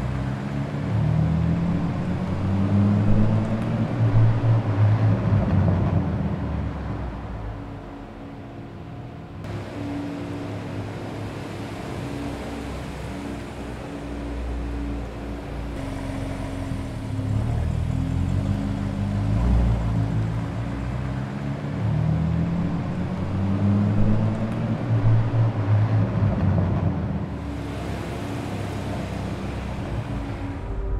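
A car engine revving in a series of rising sweeps. It eases off about a third of the way through and builds again in repeated sweeps in the second half.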